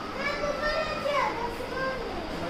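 A young child's high-pitched voice, its pitch rising and falling over about a second and a half, with no clear words.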